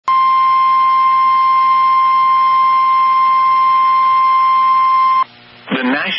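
NOAA Weather Radio 1050 Hz warning alert tone: one steady, loud beep lasting about five seconds that signals a warning broadcast is about to follow. It cuts off suddenly and gives way to a brief radio hiss before the announcement begins.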